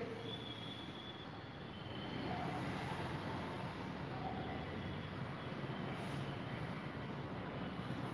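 Steady background noise with a few faint thin tones, without speech.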